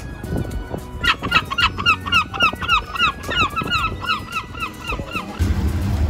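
Herring gull giving its long call: a rapid series of loud, downward-slurring yelps, about four a second, for some four seconds. Near the end a vintage racing car's engine comes in with a low, steady rumble.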